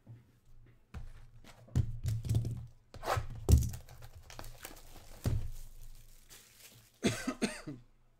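Hands handling a cardboard Panini Contenders Football trading card box on a table: a run of knocks and thumps with rubbing between them, the loudest thump about three and a half seconds in. A short throat sound near the end.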